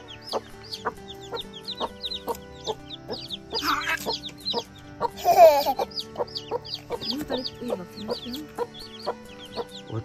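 Chicks peeping: a constant run of short, high, falling chirps, with two louder calls about four and five and a half seconds in. Background music with sustained tones plays underneath.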